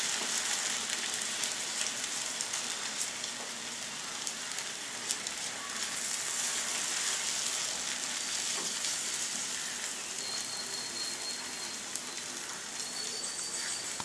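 Eggs sizzling as they fry in a nonstick pan over onion masala, a steady hiss while they are scrambled with a wooden spatula, with scattered light clicks from the spatula.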